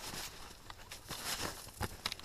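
Footsteps on a snowy forest trail: a few separate crunches and clicks over a low, even background.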